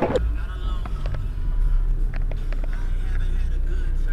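A car engine running with a steady low rumble, with a few light clicks over it.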